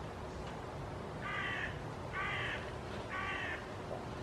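A crow cawing three times, about a second apart, over a steady low background rumble.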